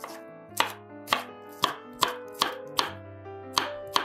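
Chef's knife dicing green bell pepper on a wooden cutting board: sharp chops against the board, about two a second.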